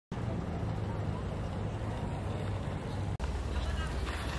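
Steady outdoor traffic rumble and hiss. It drops out for an instant about three seconds in and comes back with a deeper rumble.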